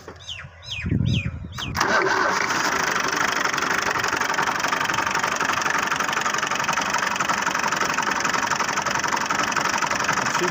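Fiat 480 tractor's three-cylinder diesel engine cranked by the starter for about a second, catching almost at once and settling into a steady idle.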